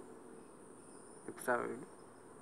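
Faint, steady, high-pitched insect chirring.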